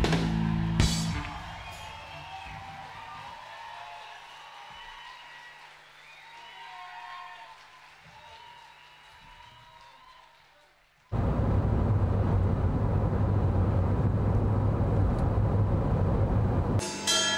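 A live rock band ends its song on a final chord about a second in, then an audience cheers and whistles as it fades away. About eleven seconds in, a sudden cut to a loud, steady noise with a low hum.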